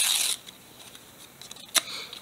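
A Pokémon trading card torn in half by hand: one short tearing burst at the start, then a short sharp crackle near the end.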